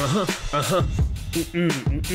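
Hip hop music: a rapped vocal over a steady drum beat.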